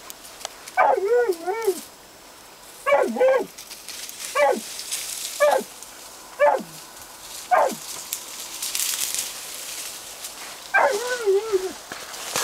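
West Siberian Laika barking: seven barks, each sliding down in pitch and mostly about a second apart. A pause of about three seconds comes before the last, longer bark.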